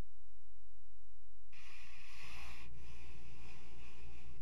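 A steady low electrical hum, joined about one and a half seconds in by a rushing hiss-like noise that lasts about three seconds.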